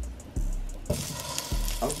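A pat of butter hitting a hot frying pan of sausage drippings and starting to sizzle about a second in, over background music with a steady beat.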